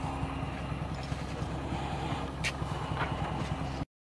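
A steady low engine hum, like a vehicle idling nearby, with a couple of faint clicks. The sound cuts off suddenly near the end.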